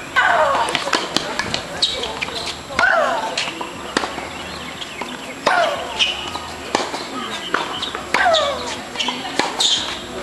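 A female tennis player shrieking on her shots during a rally: four long shrieks, each falling in pitch, about every two and a half seconds. Sharp pops of racket on ball and the ball bouncing on a hard court come between them.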